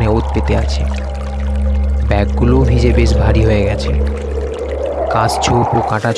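Eerie horror soundtrack: a steady low drone under a noisy whoosh that swells and sinks, with short bursts of voice a couple of times.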